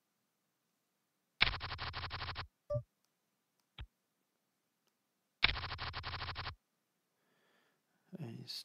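PokerStars client's card-dealing sound effect: a quick, rattling riffle of cards about a second long, played twice about four seconds apart as new hands are dealt. A short electronic blip and a single click fall between the two.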